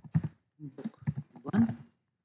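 A man's voice saying a few short, indistinct words, the last one the loudest.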